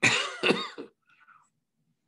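A man coughing: two quick coughs in under a second.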